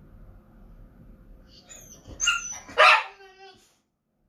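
A dog barking twice, about two seconds in, the second bark louder.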